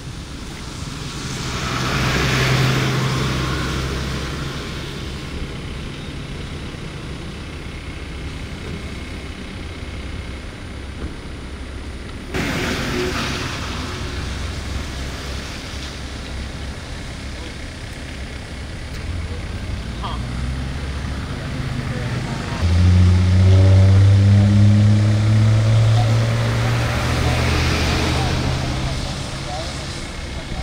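Roadside traffic: engines running and vehicles passing on a wet road. A heavy diesel engine revs up and pulls away about three-quarters of the way through, the loudest sound here.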